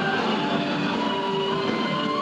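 Heavy metal band playing live, with distorted electric guitars holding sustained notes over a steady, dense wall of sound.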